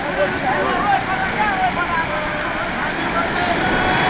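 Several fishermen's voices calling and talking over one another, with no clear words, over a steady wash of surf.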